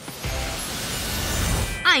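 A rush of noise that grows louder over a couple of seconds, under background music, until a voice starts near the end.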